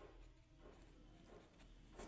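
Faint scratching of a pen writing on ruled paper, barely above near silence.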